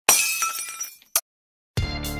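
Glass-shattering sound effect from an intro animation: a sudden crash that rings and fades over about a second, then one short sharp crack. Music with a beat starts near the end.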